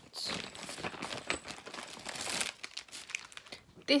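A bag crinkling as a hand rummages through it, dense for the first two and a half seconds, then a few lighter rustles.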